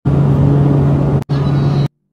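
Loud, steady engine drone inside a small aircraft's cabin, a low hum under a wash of noise, cut off sharply just after a second in and again near the end.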